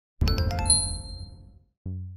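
Short logo chime: a few quick, bright struck notes that ring on and fade away over about a second and a half. Near the end a low steady music tone comes in.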